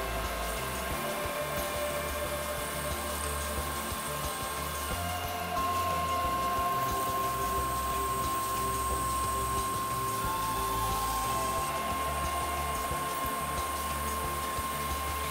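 Table saw running while a drill spins a square wooden stick through a dowel jig against the blade, turning it into a round dowel; a steady motor whine that grows louder about five and a half seconds in.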